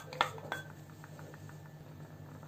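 A glass bowl clinks against a pan twice, the second time with a short ring, as milk powder is tipped and scraped out of it, followed by a run of faint light ticks.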